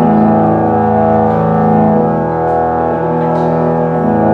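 Organ and tuba holding a loud, sustained low chord of long steady notes, the upper voices shifting about two seconds in, with no drums.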